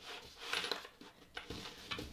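Faint handling noise of a fabric zipper gusset being finger-pressed and moved by hand, with a small click about one and a half seconds in.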